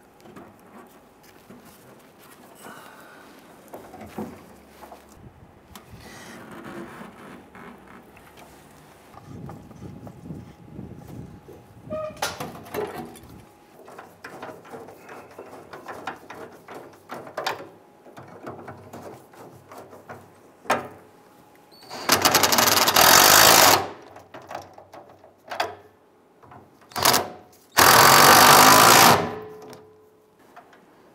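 Two short bursts of an impact wrench, about a second and a half each, running a fuel tank mounting bolt up into its bracket. Before them come quiet clicks and the handling of parts.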